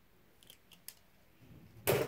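A few faint plastic clicks as a Beyblade spinning top is handled in the hand, then a single short, louder knock near the end.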